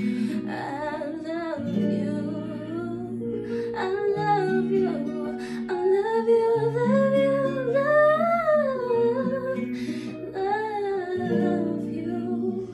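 A woman singing a slow, wordless melismatic line with vibrato and runs, climbing to a long held phrase in the middle, over an instrumental accompaniment of sustained chords.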